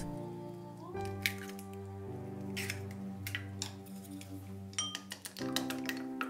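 Soft background music with scattered light clicks and clinks of an egg being cracked open and beaten with wooden chopsticks in a small glass bowl.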